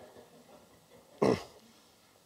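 A man clearing his throat once, a short falling sound about a second in, in an otherwise quiet lecture room.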